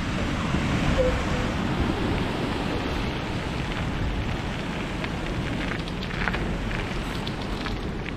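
Steady wind rushing over the microphone of a moving bicycle, with the tyres rolling on rough asphalt underneath.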